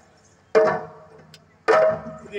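Two ringing strokes on a maddale, the Yakshagana barrel drum, a little over a second apart, each fading away after it is struck.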